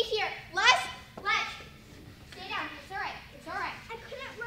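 Children's high-pitched voices calling out in several short cries that rise and fall in pitch, with no clear words.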